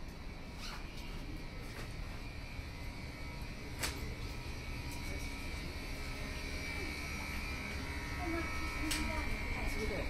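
Night-time street ambience: a steady low rumble of distant traffic under faint, indistinct voices of passers-by. A thin, steady high whine grows louder near the end, and a few isolated sharp clicks stand out, the loudest about four seconds in.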